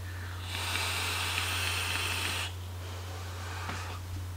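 Air being drawn through the Tauren RDA's airflow holes during a vape hit: a steady hiss that starts about half a second in and stops suddenly about two seconds later.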